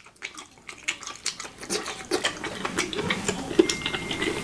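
Close-up chewing of a spear of sautéed asparagus: wet, smacking mouth sounds with dense, irregular crackling clicks that grow busier over the second half.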